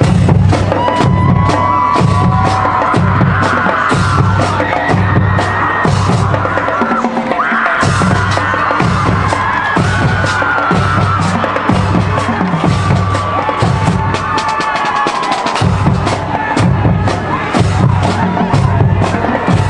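High school marching band playing, starting suddenly at full level: horn melody lines over a regular, pulsing low bass and sharp percussion hits.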